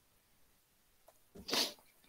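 A person sneezing once, about one and a half seconds in: a short, sharp burst of breath.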